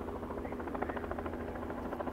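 Steady low mechanical drone with a fast, even pulsing, like an engine or rotor running some way off.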